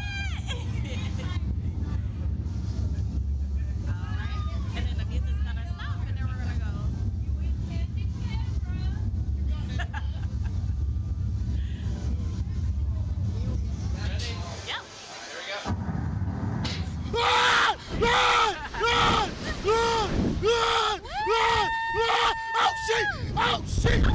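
A steady low hum with faint muffled voices, which cuts out about 15 s in. Then the riders of a slingshot (reverse-bungee) ride yell over and over as it launches, ending in a long held scream.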